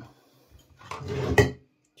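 Glassware being handled on a tabletop: a short rattle and scrape builds to a sharp glass clink about a second and a half in.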